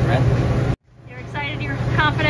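Steady low drone of a walk-in cooler's evaporator fan under a man talking. All sound cuts out abruptly just under a second in, then the drone and talking return.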